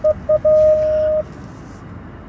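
Vehicle parking sensor beeping while parking: a couple of short beeps, then a continuous tone for about three-quarters of a second, the sign of an obstacle very close.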